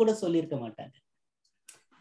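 A voice speaking Tamil briefly, then a pause broken by two faint short clicks near the end.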